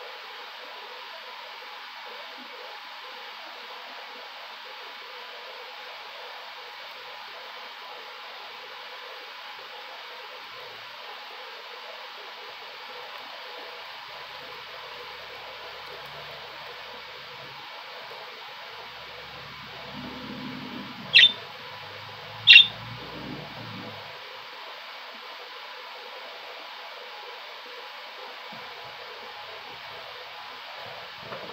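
Budgerigar giving two short, sharp, high chirps about a second and a half apart, over a steady background hiss.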